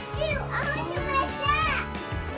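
Young children's high-pitched voices, chattering and squealing in sliding sing-song tones, over background music.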